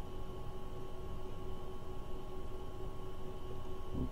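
Steady room tone: a low background noise with a faint, even electrical hum and no distinct event.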